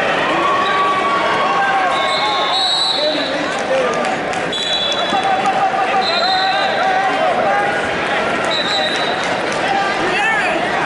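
Crowd noise in a large hall: many overlapping voices of spectators and coaches talking and calling out. Four short, high, steady whistle tones sound at intervals, typical of referees' whistles on the wrestling mats.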